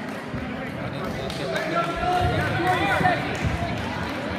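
Shouting voices of coaches and spectators urging on wrestlers in a gym, loudest about midway through, with a few dull low thumps around the same time.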